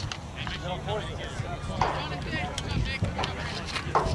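Scattered distant shouts and voices from players and people along the sideline of an outdoor soccer game, over a steady low wind rumble on the microphone. Two sharp knocks stand out, one about two seconds in and one near the end.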